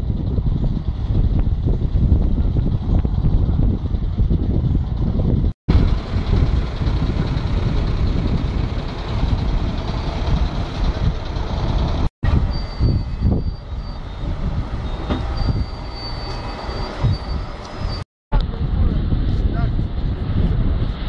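Road traffic on a bridge, with wind buffeting the microphone as a heavy low rumble; the sound breaks off abruptly three times, and faint steady high tones come and go in the second half.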